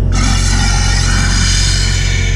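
Pressurised air hissing out of the vacuum trailer's fluid hose as the yellow release valve is opened, starting suddenly with a whistling edge and holding steady, over the low steady drone of the truck's engine running the pump.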